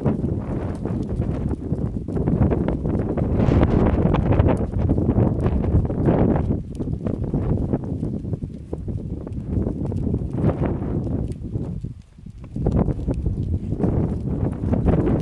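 A large herd of goats on the move over dry ground: many hooves shuffling and clicking together in a dense, steady patter, with a short lull about twelve seconds in.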